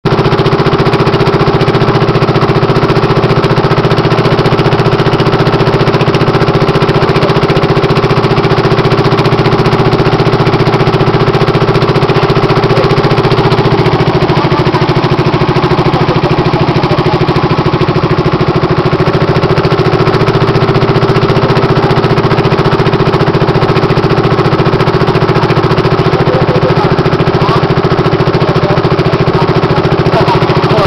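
Small boat's engine running steadily at cruising speed while under way, loud and unchanging throughout.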